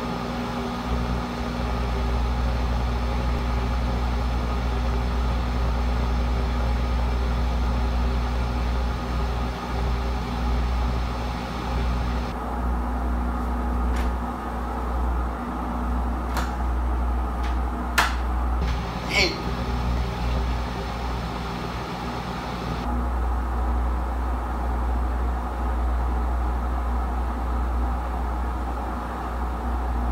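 Whirlpool Duet Steam front-load washing machine in its spin cycle at the maximum 1300 RPM spin speed: a steady hum and whir of the fast-spinning drum, with a few sharp clicks in the middle, the loudest about 18 seconds in.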